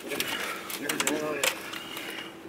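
A few short, sharp clicks and crackles of plastic takeout containers being handled as the food is picked up to eat.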